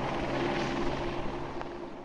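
Helicopter in flight: steady rotor and engine drone with a rushing hiss, slowly fading.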